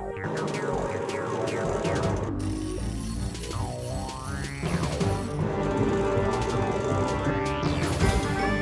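Dramatic cartoon launch-sequence music. Partway through, a swooping sound effect glides down in pitch and then back up.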